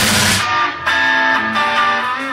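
Live band playing a soul-pop song; about half a second in, the bass and drums drop out, leaving an electric guitar playing a short line of held notes on its own.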